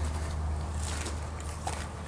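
A low steady hum with faint rustling and a few light clicks.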